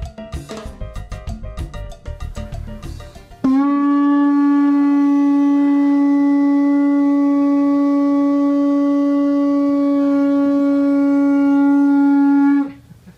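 Upbeat Latin-style music with drums for the first three and a half seconds. Then a conch shell trumpet is blown in one long, steady note, held for about nine seconds; it sounds like a trumpet.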